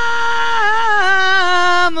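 A male singer holds one long shouted note on the drawn-out word "Mister", with no accompaniment. The pitch sags slightly about halfway through and again near the end.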